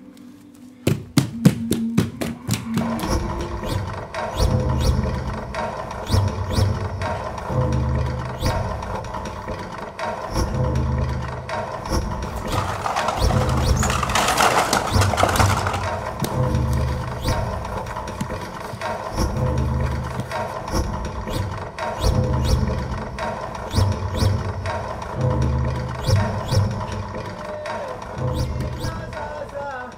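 Instrumental music: a low pulsing bass figure repeats about every two seconds under sustained higher tones. It opens with a quick run of clicks, and a hissing swell rises and falls around the middle.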